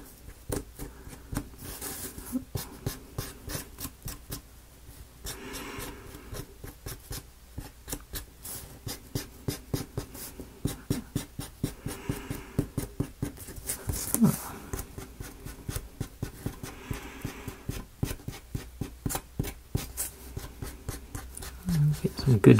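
Many light taps and scratches, a few per second, of a paint applicator being dabbed and dragged over a small wooden model, with a few brief soft swishes.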